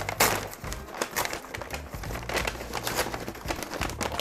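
Brown paper delivery bag rustling and crinkling as hands open it and rummage inside, in irregular handfuls of crackly paper noise.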